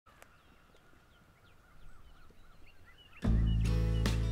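Faint birds chirping, short quick calls over a quiet background. About three seconds in, background music cuts in suddenly and loud, with a deep held bass and sustained chords.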